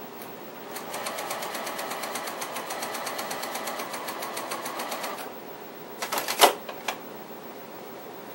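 Juki TL98Q straight-stitch sewing machine stitching a curved quilt seam at a steady fast pace, a rapid even ticking for about four seconds. About a second after it stops come a few sharp clicks and one loud snap, typical of the machine's thread-cutter button trimming the thread.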